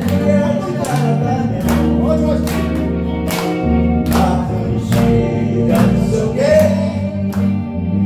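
A small live band playing a Korean pop song: a man singing, backed by electric guitar, electric bass and a steady drum beat.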